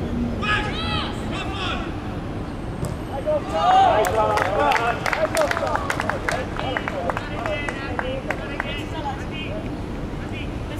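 Young footballers and sideline spectators shouting across a pitch: high calls near the start, then several voices at once with sharp knocks among them from about three and a half seconds in, loudest around four seconds.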